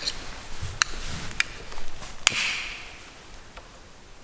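A long-nosed gas lighter clicked a few times, the last sharp click about two seconds in followed by a brief hiss as it lights to light a candle. Soft footsteps just before.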